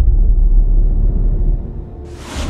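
A loud, deep bass rumble, a transition sound effect at a segment break, that fades away near the end.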